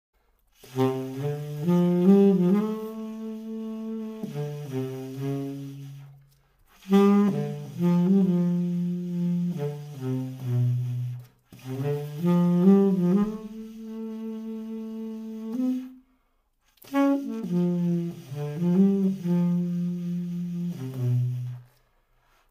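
Trevor James Signature Custom tenor saxophone played solo and unaccompanied: four slow melodic phrases, mostly in the low register, each ending on a held note, with short pauses for breath between them.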